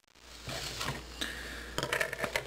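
Light handling noise: scattered soft clicks and knocks of a hard plastic model-kit sprue being moved on a cutting mat, with a cluster of sharper clicks near the end, over a low steady hum.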